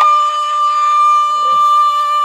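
One long, steady high note held by singing voices in a village dance song, with a fainter lower note beneath it. Faint thuds come in near the end.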